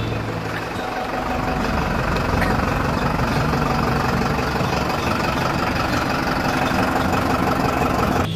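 A truck's engine idling steadily, an even low hum with no change in speed.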